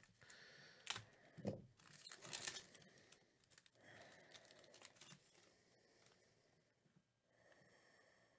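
Faint crinkling and tearing of a trading-card pack wrapper being opened by hand, loudest about two seconds in, then quieter rustling of the cards being pulled out.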